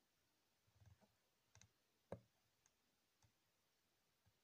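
Faint clicks of the tremolo pedal's wave edit knob being turned: about five separate ticks, the loudest about two seconds in.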